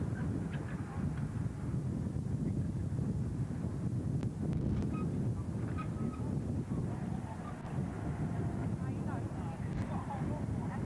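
Wind buffeting a camcorder microphone: a steady, uneven low rumble, with faint voices nearby.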